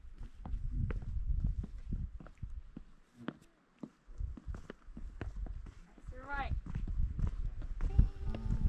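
Footsteps on stone stairs, a run of short steps over a low rumble, with a brief pause about halfway. A short voice sound comes about six seconds in.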